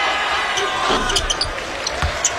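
Basketball game sound in an arena: a steady crowd hubbub, with a basketball thudding on the hardwood court and sneakers squeaking a few times as players move.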